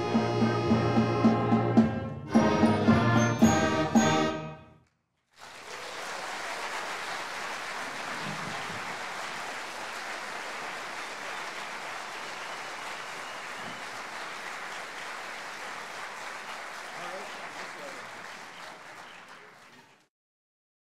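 A school concert band, brass to the fore with percussion, plays its closing bars, ending on a run of short accented chords that stop about four and a half seconds in. After a brief gap, the audience applauds steadily, fading out near the end.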